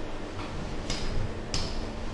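Stylus tapping and scratching on an interactive whiteboard as an equation is written: two short strokes, about a second and a second and a half in, over a steady low hum.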